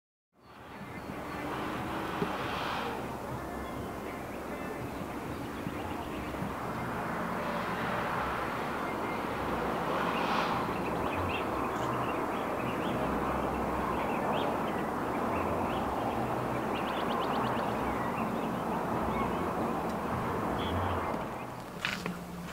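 Outdoor ambience: a steady rushing noise with scattered bird chirps and a short trill.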